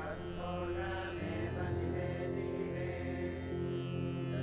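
Soft background music of long held notes over a steady low drone.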